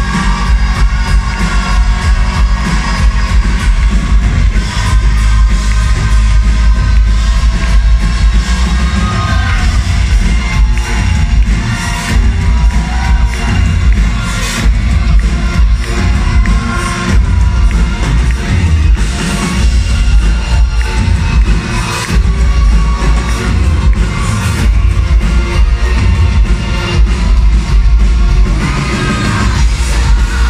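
Live rock band playing loudly through a PA, with a singer and a heavy, steady bass and drums; the crowd is heard beneath the music.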